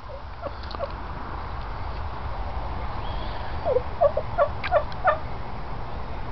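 Short bird calls: two brief notes about half a second in, then a quick run of about six short calls near the end, over a steady low background rumble.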